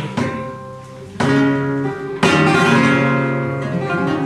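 Flamenco acoustic guitar strumming chords: three strong strums about a second apart, each left to ring.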